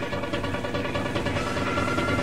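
Trance music taped off a radio broadcast: a dense, fast-pulsing synth passage over steady bass, with a held high synth note coming in about one and a half seconds in.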